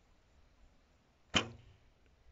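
A bow being shot: a single sharp snap of the released bowstring about a second and a half in, dying away quickly with a short low ring.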